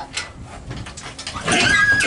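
A horse being backed out of a horse trailer: faint knocks in the stall, then a loud horse vocal sound in the last half second.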